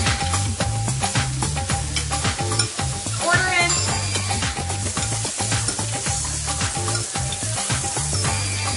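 Bacon sizzling and crackling in a frying pan, under music with a repeating, funky bass line.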